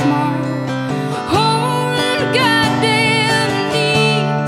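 A woman singing with her own strummed acoustic guitar; a long sung note slides up about a second and a half in and is held with gentle bends.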